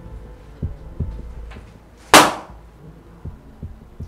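Heartbeat sound effect in the film's score: slow, low thumps in lub-dub pairs. About two seconds in comes a single sudden loud hit-like burst that dies away within a few tenths of a second.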